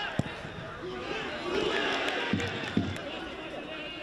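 A football kicked hard, a sharp thud about a fifth of a second in, then a second thud near three seconds in, under men's voices calling out across the pitch.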